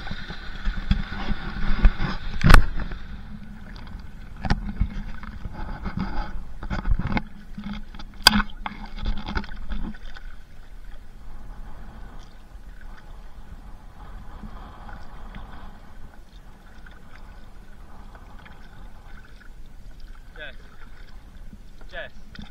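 Water sloshing and splashing around a kayak's hull while it is paddled, with several sharp knocks against the hull, the loudest about two and a half and eight seconds in. After about ten seconds the sound drops to quieter, steady lapping of water.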